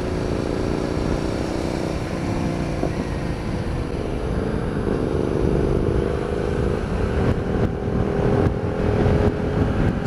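Hyosung GT650R's V-twin engine running through an aftermarket Danmoto exhaust at riding speed, its note climbing slowly in the second half as the bike accelerates, under steady wind noise on the microphone.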